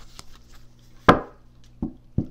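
Tarot cards being handled on a tabletop: one sharp, loud tap or slap about a second in, with a lighter click near the start and another near the end.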